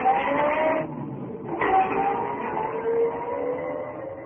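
Car engine sound effect: a car pulling away and accelerating, its pitch rising, with a short break about a second in like a gear change. It then climbs again more slowly and fades near the end.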